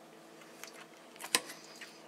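A metal fork clicks sharply once against a ceramic plate, with a few fainter clicks around it.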